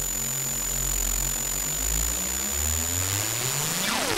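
ZX Spectrum 128K AY sound chip playing a riser in the demo's soundtrack: steady hiss over held low tones, with a set of tones sliding upward over the last two seconds, like an engine revving up. A falling sweep begins right at the end.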